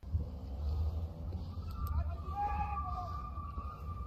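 Faint, distant voices picked up by a phone microphone outdoors, over a steady low rumble of wind or handling noise on the mic.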